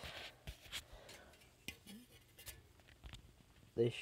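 Faint handling noise: scattered light clicks and rustles as the fan and camera are moved about.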